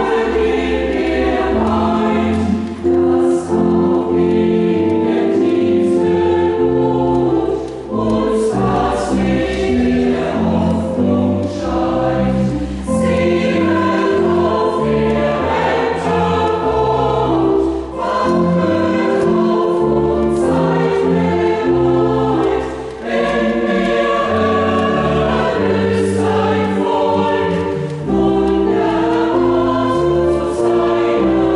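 Mixed church choir singing a German hymn in a choral setting, accompanied by organ, with steady low bass notes under the voices and short breaths between phrases.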